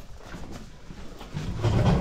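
Faint, scattered knocks and scuffs of a pit bull and a puppy's paws on wooden deck boards, then a man's voice starts about a second and a half in.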